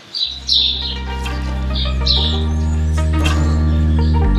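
Birds chirping in short high calls during the first second or so, while background music begins with sustained low chords that change about every two seconds and grow steadily louder.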